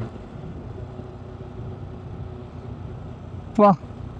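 Motorcycle riding at steady speed on a highway: a low, even engine and wind drone with a faint steady hum. The rider gives a short exclamation near the end.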